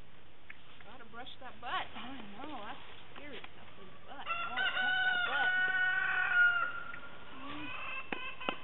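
Chickens clucking in short wavy calls, then a rooster crowing one long, steady call about halfway through, lasting about two and a half seconds.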